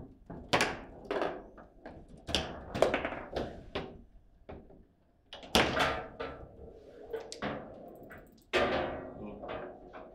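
Foosball in play: the ball is cracked by the rod figures and rebounds off the table walls, with rods knocking against the sides, an irregular run of sharp knocks that ring briefly. The hardest hits come about half a second in, around three seconds in, after a lull at about five and a half seconds, and again about eight and a half seconds in, in the stretch where a goal is scored.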